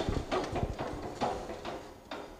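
Steel ATV front-loader arm being shaken by hand, knocking a handful of times in its pins and mounts, the knocks getting quieter.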